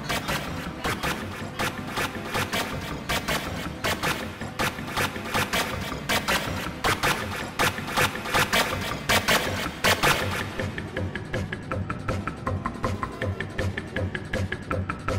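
A dense, stuttering jumble of layered audio from several overlapping video clips played at once, full of rapid clicks and pulses. About ten seconds in the highest sounds drop away and the pulses settle into a more regular beat.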